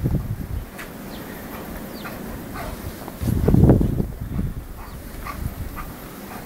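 Giant Schnauzer giving a deep, roughly one-second vocalisation a little after three seconds in, over quiet rustling.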